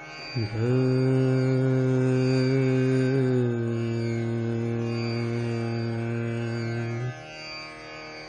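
Male Hindustani classical vocalist singing slow aalap in raga Bhimpalasi over a tanpura drone. After a short rising glide he holds one long note for about three seconds, steps down slightly to another long held note, and breaks off about seven seconds in, leaving only the faint tanpura drone.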